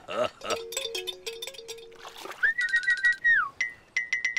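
Cartoon soundtrack of music and comic sound effects. A short chirp opens it, then comes a stepping line of low held notes, then a high whistling tone with rapid ticking that slides down about three and a half seconds in.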